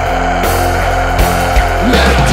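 Heavy metal band music: distorted electric guitars and drums under one long held note.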